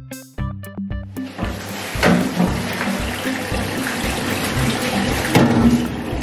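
Background music with plucked notes, joined about a second in by a steady rush of water running from a kitchen tap into a steel sink, which carries on to the end.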